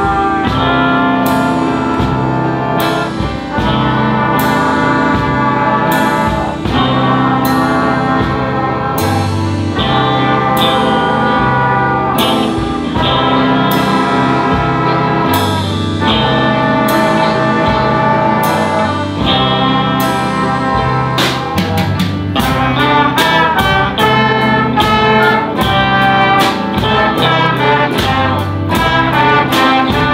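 A young players' band of brass, woodwind, electric guitar and drum kit playing an upbeat piece with a steady beat. The drumming becomes busier about two-thirds of the way through.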